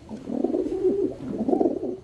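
A bird cooing in two phrases of about a second each, loud over a faint background; it starts and stops abruptly.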